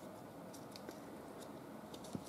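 Faint crinkling of a paper strip being pinched and folded into tight accordion pleats, a few light crackles over quiet room hiss.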